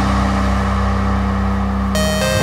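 Background music: a held low synth chord that fades slowly, with a new chord and bell-like tones coming in near the end.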